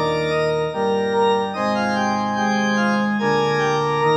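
Church organ voice of a Kawai ES8 digital piano, played through the piano's own built-in amplifier and speakers: sustained organ chords, changing about once a second.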